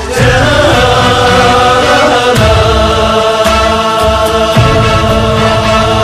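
A group singing a Tibetan gorshay circle-dance song together, in long held phrases.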